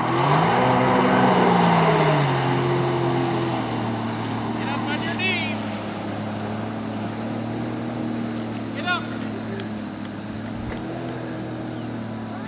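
Jet ski engine revving up as it accelerates away towing an inflatable tube, its pitch rising in the first second with a rush of water spray. It then settles into a steady run, quieter as it pulls away.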